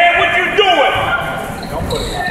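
Voices in a gym during a basketball game, people talking and calling out over one another.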